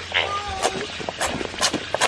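Red gel squirted from plastic squeeze tubes onto a vinyl play mat, in a few short sharp squirts, with a brief pitched voice-like sound near the start.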